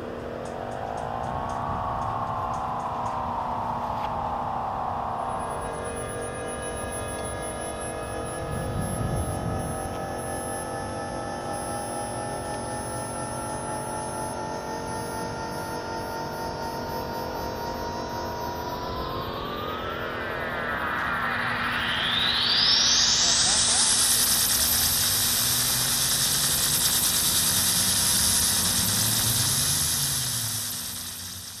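Electronic synthesizer music: a layered drone of held tones that opens with a short upward glide and then slides slowly downward. About two-thirds of the way through, a steep rising sweep climbs into a high hiss that holds.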